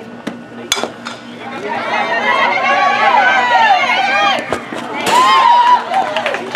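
A bat hits a softball with one sharp knock about a second in, then spectators shout and cheer with many voices at once, rising again near the end as the batter runs.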